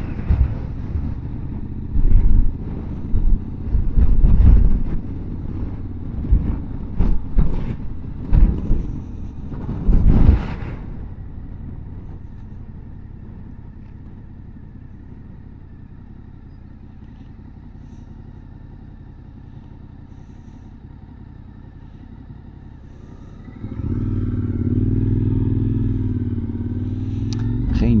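Motorcycle ride heard from the bike: gusty wind buffeting the microphone over the engine for the first ten seconds or so, then a quieter low engine rumble while slowing. About 24 s in, a motorcycle engine pulls away under throttle, its pitch wavering up and down.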